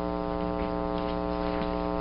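Steady electrical mains hum in the courtroom audio feed: a low, even buzz with a stack of evenly spaced overtones that holds unchanged throughout.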